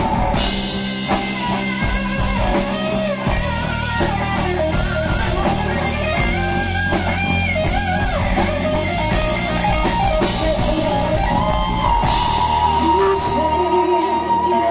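Live rock band playing loudly: electric guitars, bass and a drum kit with a steady cymbal beat, and a woman singing.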